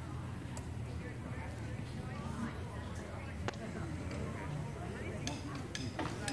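A quiet pause: faint background murmur with a few small clicks and taps as the band readies its instruments.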